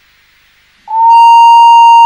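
Steam locomotive whistle blown once: a loud, steady single note that starts suddenly about a second in and holds.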